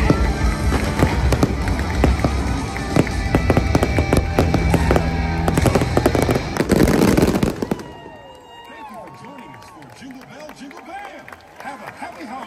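Fireworks finale: rapid bangs and crackling over loud show music, building to a dense volley that cuts off about eight seconds in. After that come the quieter voices of the crowd.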